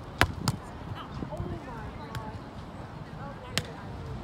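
Sharp thuds of a ball being hit or bounced: two in quick succession near the start and a third near the end, with voices in the background.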